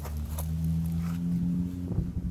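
A steady low engine hum running throughout, with a couple of faint clicks.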